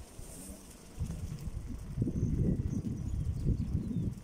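Bicycle rolling over paving stones: a low, uneven rumble with rapid knocks and rattles, starting about a second in and louder from about two seconds.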